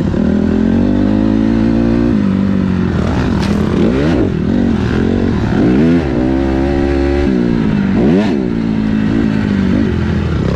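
Motocross dirt bike engine heard from on board the bike. It holds a steady pitch for about two seconds, then revs up and down several times as the throttle is worked through the track's turns and jumps.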